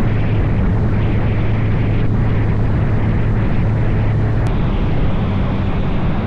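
Motorcycle riding at a steady cruising speed: a constant low engine hum under heavy rushing wind and road noise.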